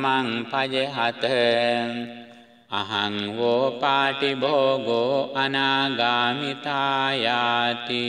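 Theravada Buddhist recitation of Pali scripture: a single voice chants in the Sri Lankan Tipitaka style on a few sustained notes. It pauses briefly about two seconds in, then resumes.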